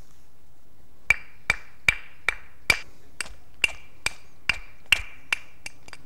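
Knapping a basalt cleaver: a quick series of sharp strikes on the basalt flake, about two to three a second. Each strike has a brief ringing note. They start about a second in and get softer near the end.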